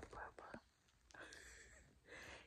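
Near silence with faint whispered speech, twice.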